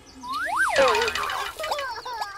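Cartoon sound effects: a whistle-like tone slides up and back down about half a second in, then several quick downward-sliding squeaks follow near the end.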